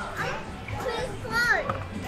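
Young children's high-pitched voices chattering and exclaiming, loudest about one and a half seconds in, over background music.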